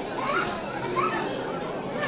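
Background chatter of many voices, with children's high voices among them.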